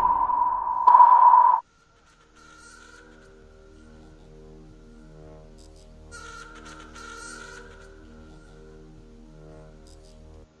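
Logo sound effect: a loud, steady high tone that cuts off suddenly about a second and a half in. After a brief gap, soft background music with held chords follows.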